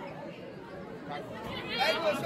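Faint background chatter of several voices in a large room, with a nearby voice starting up near the end.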